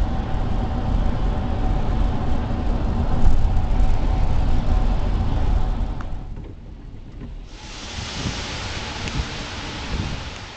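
Road noise heard inside a moving car: a heavy low rumble with a faint steady hum. About six seconds in it drops off sharply, and a steady hiss follows over the last few seconds.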